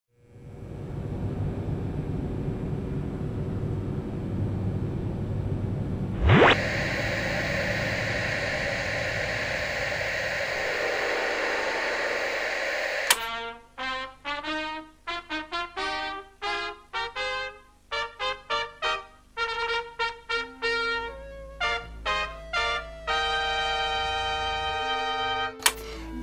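Steady hiss of television static, with a tone sweeping upward about six seconds in. About halfway through, a click cuts the hiss off and music of short, clipped notes begins, ending on held notes.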